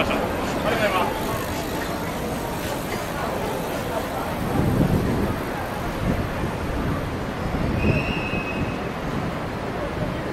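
City street ambience: passers-by talking and road traffic, with a louder low rumble of a vehicle going by about halfway through.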